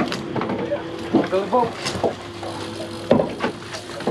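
Short bursts of voices over wind noise on the microphone, with a steady hum underneath that stops about three seconds in.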